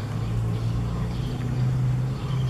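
An engine running with a low, steady hum.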